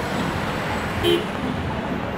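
Steady city street traffic noise, with car tyres on wet pavement. A brief, toot-like tone sounds about a second in.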